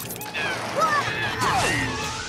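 Cartoon chase sound effects over background music: a sudden scuffling burst, a sharp hit about one and a half seconds in, and falling pitch glides, the last sliding steeply down.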